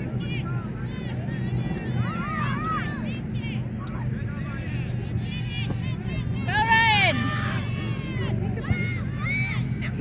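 Children's voices shouting and calling out across an open soccer field in short high cries, the loudest about seven seconds in, over a steady low rumble.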